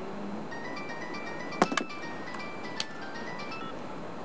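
Mobile phone ringing with a melody ringtone: a tune of short, high electronic beeping notes. Two sharp clicks come about a second and a half in, the loudest sounds here, and a lighter one near three seconds.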